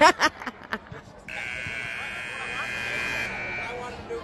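Scoreboard buzzer in an indoor soccer dome sounding one steady blast of about two seconds, the horn that ends the game. Just before it there is a loud shout.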